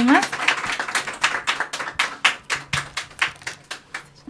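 A few people clapping at the end of a live song. The claps are distinct and come about four or five a second, thinning out and fading away by the end.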